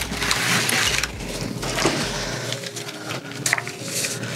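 Rustling, scraping and crinkling of a cardboard mailer box and its paper packaging as it is opened and sheets are slid out, loudest in the first second, with scattered small clicks.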